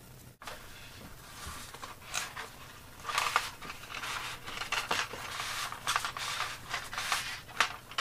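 A spar being slid through the cored channel of a foamboard wing, with irregular scraping and rustling of the foam and its paper skin as the wing is handled; it gets busier about three seconds in.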